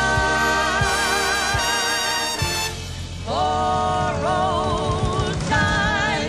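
Three women singing long held notes in close harmony with vibrato, over a band with drum hits. The held chord breaks off about halfway through, and a new held chord comes in soon after.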